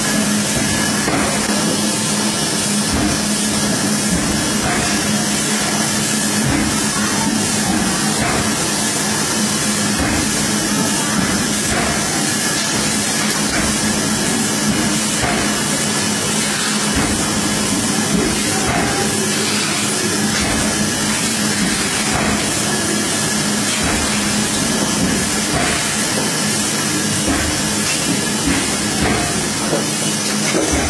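1200PC automatic high-speed folder-gluer running: a loud, steady mechanical whir and hiss with a constant low hum as cartons are carried through its belts.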